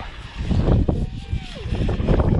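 Wind buffeting the microphone as a gusty low rumble, with indistinct voices.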